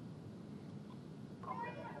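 Quiet room tone through a press-conference audio feed, with a faint high-pitched voice-like call in the last half second.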